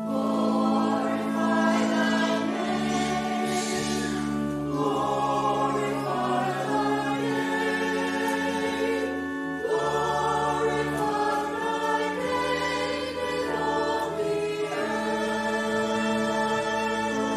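Church choir singing slowly in held chords, with sustained keyboard accompaniment underneath.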